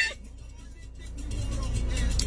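Low rumble of a car heard from inside its cabin, swelling louder in the second half.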